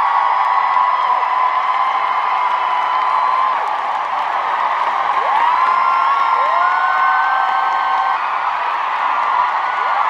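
Huge stadium crowd cheering and screaming, with long high-pitched screams held above the roar; a couple of screams rise in pitch about five and six seconds in.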